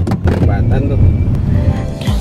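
A power bank dropping inside a moving car: a sharp knock at the start, then loud low rumbling handling noise on the microphone over the car's road rumble.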